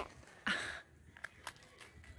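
A child biting into and chewing a s'more: a short breathy rustle, then a few faint crisp clicks as the graham cracker crunches.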